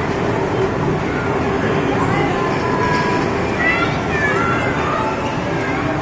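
Din of a busy indoor arcade gaming zone: a steady wash of crowd chatter and children's voices, with scattered short high electronic tones from the game machines.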